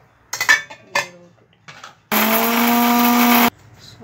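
A few metallic clatters of steel, then an electric mixer grinder runs in one short burst of about a second and a half and stops abruptly. It is grinding dry red chillies into coarse flakes in its steel jar.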